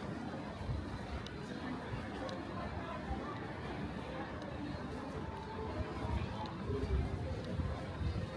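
Ambient sound of shoppers in a covered shopping arcade: indistinct chatter of passers-by over a steady low rumble, growing a little louder and bumpier near the end.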